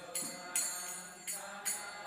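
Metal hand percussion keeping the beat of a devotional chant, sharp jingling strikes about twice a second, with faint group singing underneath.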